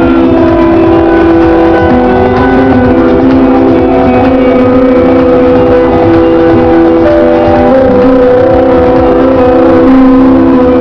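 Loud hardcore (gabber) dance music from a festival sound system, heard from in the crowd, running on without a break with long held notes over a heavy low end.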